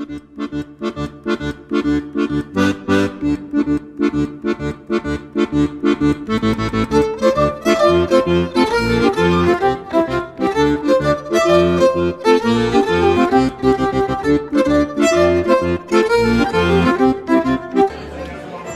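Folk tune played on accordion with bowed strings, a lively, rhythmic melody that starts softly and grows fuller about six seconds in.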